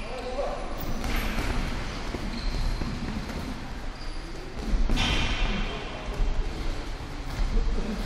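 Boxing sparring in a large hall: footwork on the ring canvas and gloved punches landing, heard as a steady noisy background with a louder stretch about five seconds in.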